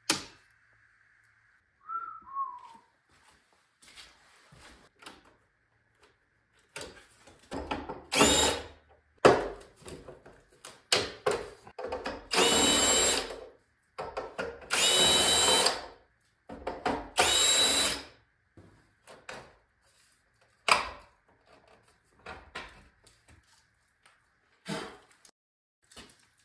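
Cordless drill-driver unscrewing the cover screws of an electrical distribution panel in four main runs of about a second each, its motor whine rising slightly during each run, with short handling noises between runs.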